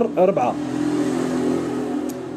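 A motor vehicle engine running with a steady drone from about half a second in.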